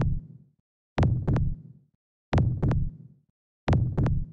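Heartbeat sound effect: a double thump, lub-dub, repeating about every second and a third, with dead silence between beats.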